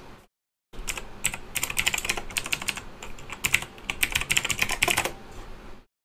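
Typing on a computer keyboard: a fast, uneven run of keystroke clicks. The sound drops out completely for a moment just after the start.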